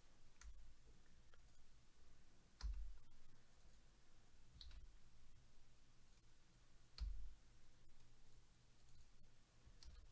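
Five separate clicks from working a computer, spaced one to three seconds apart, each with a short low thump, against near silence; the second and fourth are the loudest.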